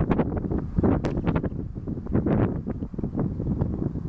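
Wind buffeting the microphone: an uneven, gusty rumble with scattered short crackles.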